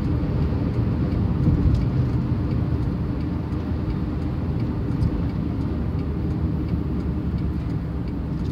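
Steady road noise inside a moving minivan's cabin at freeway speed: engine and tyre rumble, mostly low-pitched and even.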